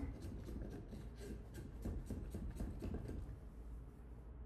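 A metal scraping blade rasping over the side of a plaster mold in a quick run of short, uneven strokes, taking off a dried drip of plaster.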